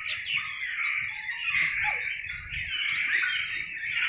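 Several birds chirping and calling together, a dense, continuous chorus of short high calls.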